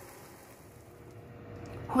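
Faint, steady sizzle of eggs frying in a pan, dipping slightly about one and a half seconds in; a woman's voice begins at the very end.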